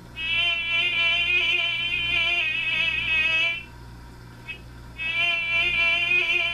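Streamline "Time Flies" BTZ497 alarm clock sounding its alarm, an imitation of a buzzing fly. The buzz, slightly wavering in pitch, runs for about three and a half seconds, stops for over a second, then starts again.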